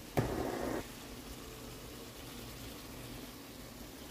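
Shrimp and tomato sauce simmering in a frying pan: a faint, steady bubbling. Just after the start there is a brief, louder noise lasting about half a second.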